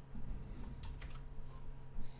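Computer keyboard being typed on: about five separate, unevenly spaced keystrokes, over a steady low electrical hum.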